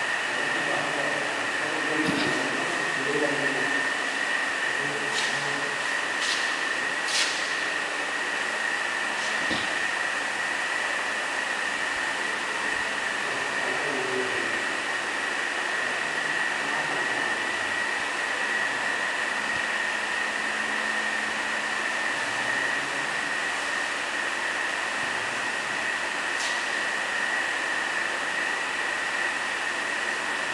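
Steady hiss with a constant high-pitched whine, under a faint murmur of voices, with a few light clicks.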